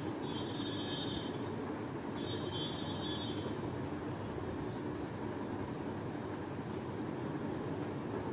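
Steady low rumbling background noise, with a marker squeaking faintly on a whiteboard in two short stretches of writing during the first half.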